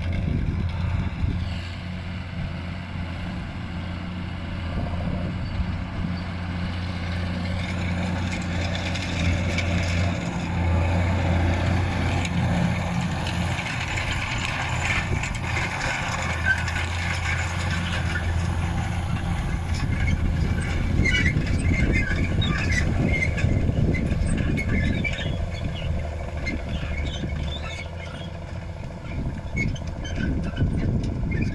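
John Deere 7820 tractor's diesel engine running steadily under load while it pulls a disc harrow through stubble, with the rattle and scrape of the discs working the soil. The sound grows louder as the tractor passes close in the middle, then eases as it moves away.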